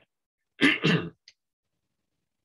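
A man clearing his throat: two quick rasps in succession, starting about half a second in and over within about half a second.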